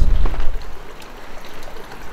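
Wind buffeting an outdoor microphone: a loud low rumble for the first half second, then a quieter steady hiss.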